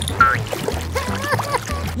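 Background music with a steady bass line, with a short upward-gliding sound shortly after the start and a few brief pitched blips about a second in.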